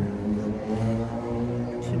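A low, steady drone of a motor vehicle engine running close by.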